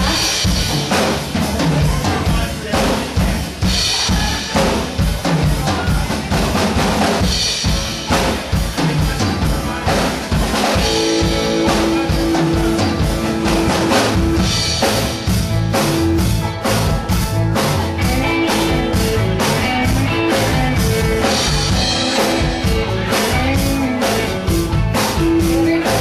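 A live band plays an upbeat dance song, with the drum kit keeping a steady beat under the guitar and keyboard. Held notes come in about halfway through.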